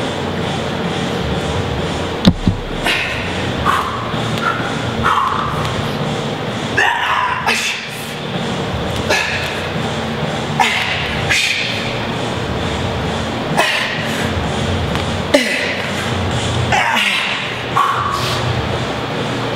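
A man's hard breaths and strained grunts, roughly one every one to two seconds, as he works through push-ups with his hands on a steel drum and his feet on a medicine ball. A sharp knock comes about two seconds in.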